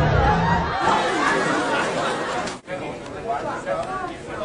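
Indistinct chatter of several people's voices, with a low rumble under it during the first second and a sudden brief break about two and a half seconds in.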